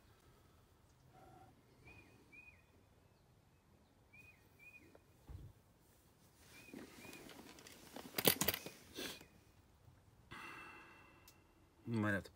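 Quiet outdoor air with a bird faintly chirping short paired notes every couple of seconds. A brief sharp clatter about eight seconds in is the loudest sound, followed by a short rustle near the end.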